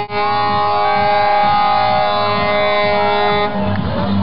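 Semi-truck air horn held in a long, loud blast. It breaks briefly at the start and cuts off about three and a half seconds in, over background music with a beat.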